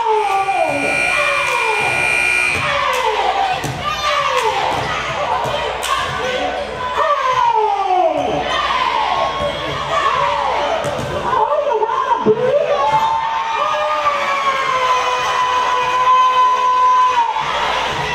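Cheerleading squads chanting and shouting in unison, call after call each falling in pitch, with sharp claps and stomps on the gym floor over crowd noise. Near the end a single long shout is held for several seconds.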